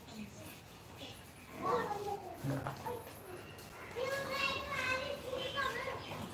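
Children's voices in the background: a high child's voice calls out about two seconds in, and again in a longer, drawn-out call from about four seconds in.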